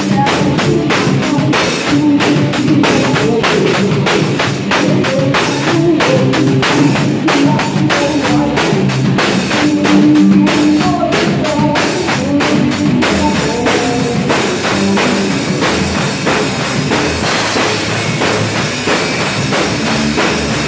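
Small rock band playing live: a drum kit with evenly spaced strokes over electric bass and guitar through amplifiers. About thirteen seconds in, the separate drum strokes blur into a denser, steadier sound.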